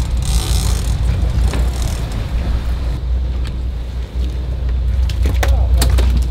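Sportfishing boat's engine running, a steady low rumble with wind and water hiss over it. A few sharp clicks near the end.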